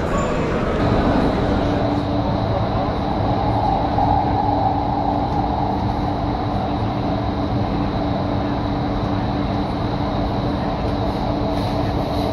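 Electric Doha Metro train running, heard from inside the passenger car: a steady rumble and hum with a few held tones, starting about a second in.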